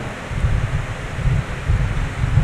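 Air buffeting the microphone: an uneven low rumble with a faint steady hiss behind it.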